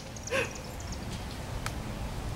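Outdoor ambience with a steady low rumble, broken by one short, high voice-like call about a third of a second in.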